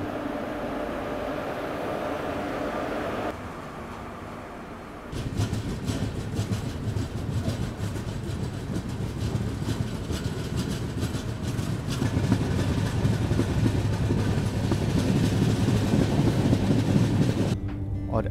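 Passenger train running on the rails, heard from an open coach door: low wheel rumble with rapid clickety-clack. It starts quieter and steadier, comes in loudly about five seconds in, and grows louder again later on.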